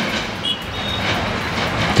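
A passing vehicle: a steady, noisy rush with two faint, brief high tones about halfway through.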